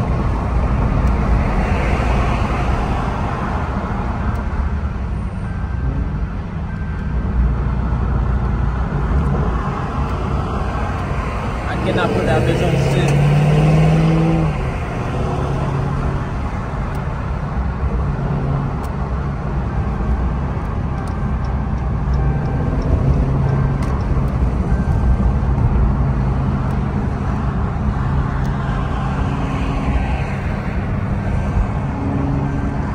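Car engine and tyre noise from inside a moving car's cabin, a steady low hum whose pitch shifts with speed. About twelve seconds in there is a louder two-second rise in the engine note.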